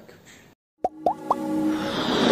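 Animated logo intro sound effects: after a brief silence, three quick rising pops about a second in, then a swelling whoosh that builds toward the end, leading into intro music.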